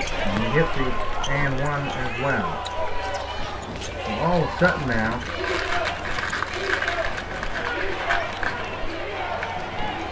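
Basketball game sound in a gym: the ball bouncing on the hardwood court in short sharp knocks, with voices of players and crowd calling out over a steady crowd din.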